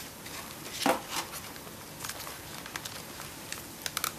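Soft handling noises as a plastic tracheal tube is pushed over a bougie into a manikin's neck: a brief rustle about a second in, a smaller one just after, and a few faint clicks near the end, over steady room hiss.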